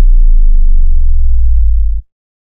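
Loud, deep synthesizer bass tone held steady, the sound of a TV channel's ad-break bumper, with a few faint ticks above it; it cuts off abruptly.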